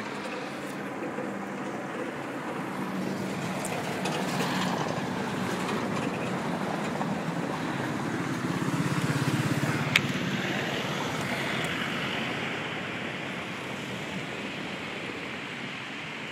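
Steady rushing of water falling through a rock gorge, heard from high above, swelling a little towards the middle, with one sharp click about ten seconds in.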